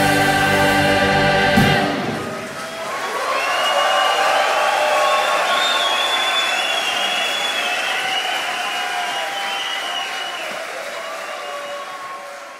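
A rock choir and band hold a final chord that ends abruptly with a last hit under two seconds in. Then the audience applauds and cheers, slowly dying away.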